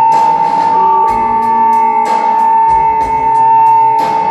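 Live band music: a keyboard holds one high note over a steady ticking cymbal beat, with lower notes changing about once a second.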